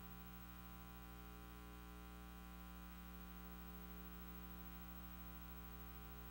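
Faint, steady electrical mains hum with its buzzing overtones, unchanging throughout.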